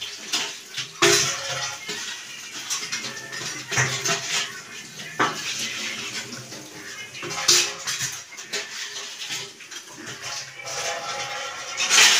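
Steel dishes and pots clattering and knocking against each other as they are washed in a sink, with tap water running. There are several sharper clanks spread through.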